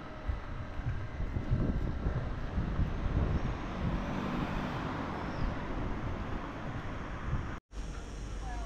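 Outdoor street noise: a low rumble with a wash of noise that swells for a couple of seconds in the middle, then cuts out for a moment near the end.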